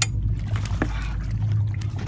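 A steady low drone from the fishing boat's engine, with light splashing as a hooked thresher shark thrashes at the surface beside the hull. A sharp click comes right at the start.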